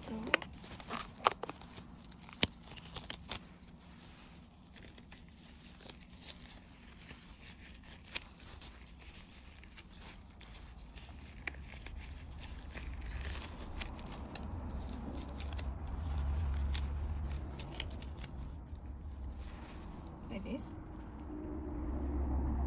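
Sterile surgical gloves being pulled on: several sharp snaps and rustles in the first few seconds, then quieter handling over a low steady hum.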